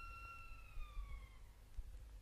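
A high, sustained tone with several overtones, held steady and then gliding downward in pitch as it fades away about a second and a half in, over a low rumble.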